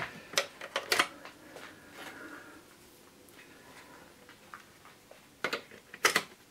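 A few light clicks and knocks of handling, three within the first second and a quick pair near the end, with faint room noise between.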